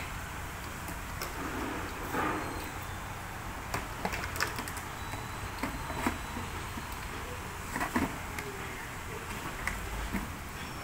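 Plastic parts being handled: scattered light clicks and knocks as black irrigation tubing is threaded through the holes of a plastic planter lid and the lid is settled on its tank, over a steady low hum.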